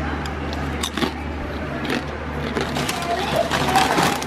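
A crinkly plastic bag of tortilla chips rustling and crackling as it is picked up and handled, the crackles thickest near the end, over a steady low hum.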